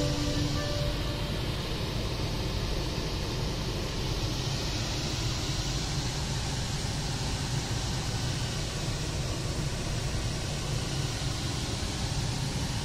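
The Tata Harrier's start-up chime dies away in the first second. It leaves a steady low hum and hiss inside the cabin with the car idling.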